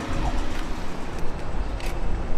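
City street traffic noise: a steady hiss over an uneven low rumble.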